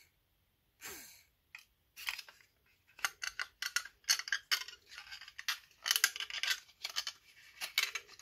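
Small plastic parts and wires of a mini UV nail dryer being handled: a quick run of light clicks and rattles that starts about two seconds in as the fan and motor assembly is worked by hand. The fan is not running.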